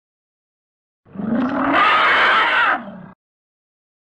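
A loud roaring growl sound effect, about two seconds long, starting about a second in and cutting off abruptly.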